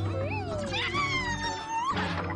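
A cartoon cat crying out in two drawn-out meow-like calls, the first falling in pitch, the second held and then rising near the end, over background music.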